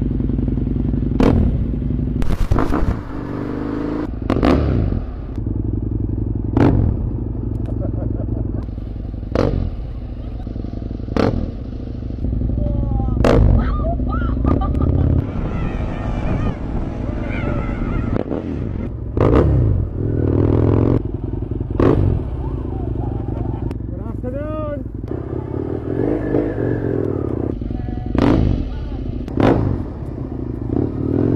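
Motorcycle engine running at a standstill, broken by sudden loud bursts every second or two, with short voice sounds now and then.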